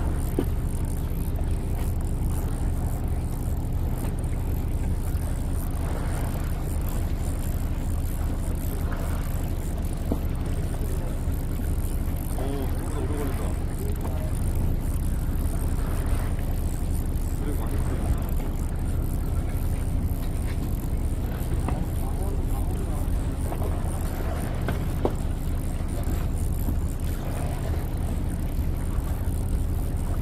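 A boat's engine running steadily, a low even hum, with voices now and then.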